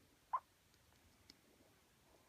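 Near silence, broken once about a third of a second in by a single short, faint squeak.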